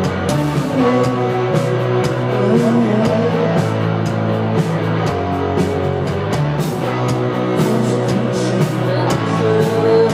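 Live rock band playing with distorted electric guitar, bass guitar and drums, a steady driving beat with cymbal hits.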